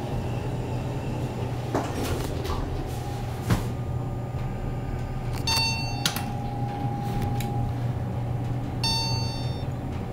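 Inside a Montgomery hydraulic elevator car travelling up: a steady low hum, with a few clicks and knocks about two to three and a half seconds in. Two short electronic beeps come about halfway through and again near the end.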